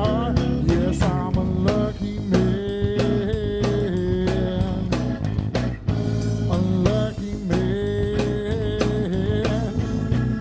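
Blues-rock trio playing live: an electric guitar plays a lead of held, bending notes over bass guitar and a drum kit.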